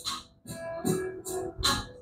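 Faint guitar music in the background, with a few light knocks and rubs from a metal-backed horn tweeter being turned over in the hand.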